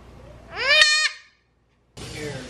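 A newborn Nigerian Dwarf goat kid bleating once, loudly, its call rising in pitch over about half a second.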